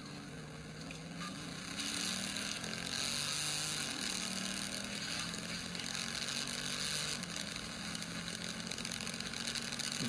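Police car's engine droning under hard driving, with wind and road noise that rises sharply about two seconds in, heard from inside the cruiser's cabin.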